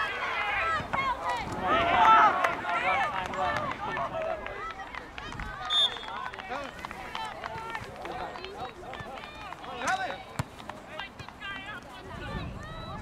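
Several people calling and shouting at once in the open air: soccer players and spectators, none of the words clear. About six seconds in, a short, high whistle blast rises above the voices.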